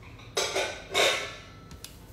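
Kitchenware being handled: two knocks about half a second apart with a short metallic ring, then a couple of light clicks near the end.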